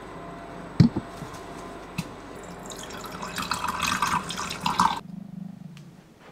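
Water pouring into a vessel for about two seconds, in tea-making. Before it come two sharp knocks of kitchenware, the louder about a second in and another at two seconds.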